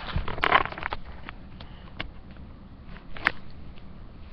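Rustling and handling noise from a handheld camera being moved about, loudest in the first second, with scattered light clicks and one sharp knock a little over three seconds in.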